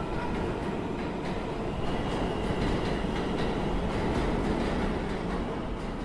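A dense, steady hiss-and-rumble noise with fine crackling and a faint high tone: the noisy ambient intro of a song recording before the music comes in.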